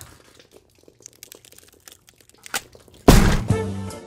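Faint scattered rustles and small ticks, then about three seconds in the show's jazzy closing theme music starts abruptly and loud, with horns.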